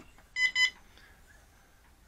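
Cheerson CX20 radio transmitter giving two short beeps in quick succession as it is switched on with the calibration stick and switch settings held, signalling that it has entered transmitter calibration mode.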